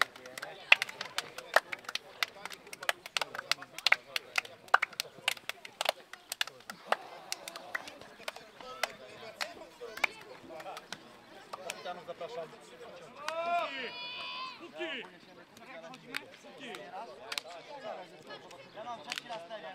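Footballers slapping and shaking hands as the teams file past each other: a quick, irregular run of sharp hand slaps that thins out after about seven seconds, with voices in the background and a loud call about two-thirds of the way through.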